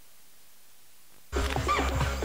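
Faint steady VHS tape hiss, then about 1.3 s in a loud soundtrack cuts in abruptly: animal calls sliding up and down in pitch over a rhythmic music bed with a steady low hum.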